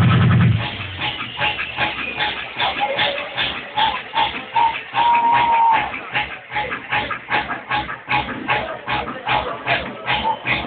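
Electronic dance music (bumping/progressive house) from a DJ's mix over a club sound system, heard dull and muffled through a camera microphone. The heavy bass drops out about half a second in, leaving a steady beat and a short held synth tone near the middle.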